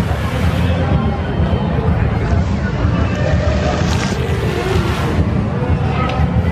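Fountain jets spraying and splashing into a pool, a steady rush over a heavy low rumble, with people's voices in the background.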